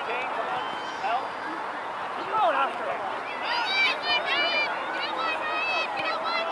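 Indistinct shouts and calls from people around a youth soccer pitch, over a steady outdoor background. The clearest are high-pitched calls about two and a half seconds in and again around the middle.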